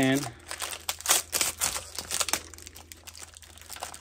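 Crinkling plastic and sticky tape being pulled off by hand, with irregular crackles and small rips, as a toy car and its remote controller that were taped together are separated.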